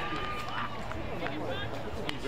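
Players and onlookers shouting and calling out across an open football ground, the words not clear, with one long held call near the start and a few short knocks.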